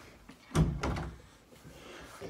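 Two thumps against a door that holds an over-the-door mini basketball hoop, about a third of a second apart, as a ball and hand are pushed up against the hoop.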